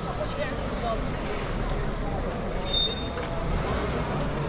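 Night-time city street ambience: a steady low rumble with faint voices in the background, and one short high beep a little past the middle.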